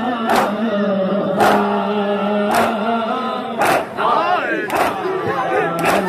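Men's voices chanting a noha together while the crowd beats its chests in unison (matam), a sharp strike about once a second keeping the rhythm.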